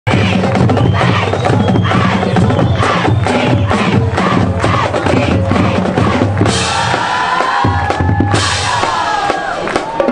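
A high school marching band playing, with the bass drums and drumline keeping a steady beat under low brass notes. About six and a half seconds in, a bright crashing burst swells over held notes.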